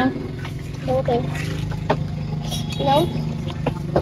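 Chopsticks and porcelain bowls clinking during a meal, a few sharp clicks, over a steady low engine hum, with brief snatches of talk.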